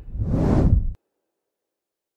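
Whoosh sound effect of an animated logo reveal, swelling over about a second and then cutting off abruptly into silence.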